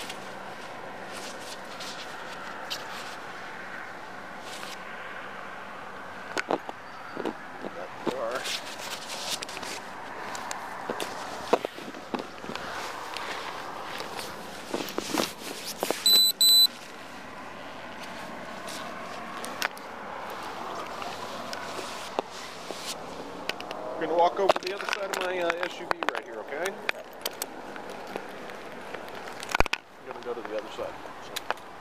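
Clothing rustle and body-camera rubbing, with scattered clicks and knocks, as a man's pockets are searched after his arrest. A short electronic beep sounds about sixteen seconds in, and muffled voices come in near the end.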